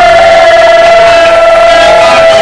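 Electric guitar feedback through the amplifier: one loud, steady whine held at a single pitch.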